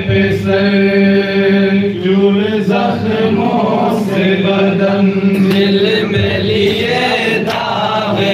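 Men's voices chanting a noha, a Shia lament, in unison through microphones. The voices hold long, drawn-out notes, with short breaks between phrases.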